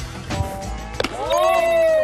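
A baseball pops into a catcher's leather mitt with a sharp smack about a second in. A drawn-out pitched tone follows, over background music.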